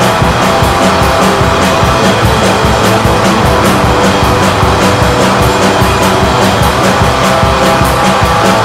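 Instrumental atmospheric black metal: a dense wall of heavily distorted electric guitars over fast, steady drumming, loud and unbroken with no vocals.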